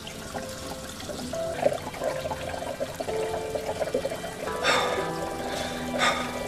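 Water running from a tap into a stainless steel sink, over soft background music.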